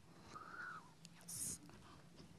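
A faint, distant person's voice in a quiet room, with a brief hiss about one and a half seconds in.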